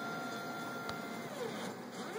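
Stepper motors of a mUVe 1 resin 3D printer driving the build platform in a fast move: a steady whine that breaks off a little over a second in and glides down in pitch as the motion slows, with a single click near the middle.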